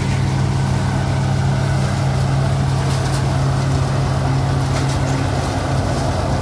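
Eicher tractor engine running steadily under load, driving a PTO-powered groundnut thresher. The thresher's drum and blower run with it as one steady, unbroken low hum.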